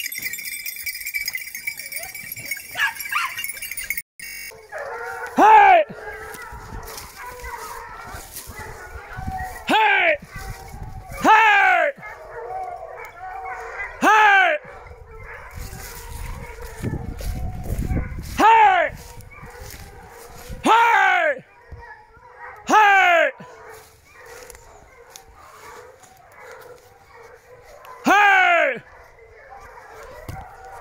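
A hunting hound baying repeatedly while running a wild boar: about eight long, separate bays, each falling in pitch, spaced a few seconds apart.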